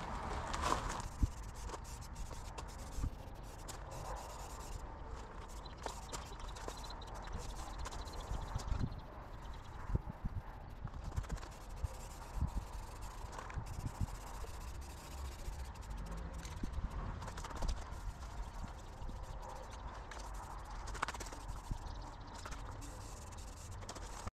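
Aerosol spray paint can hissing in bursts with short breaks as flat black paint is sprayed onto a metal tool box, over wind rumbling on the microphone and a few small clicks.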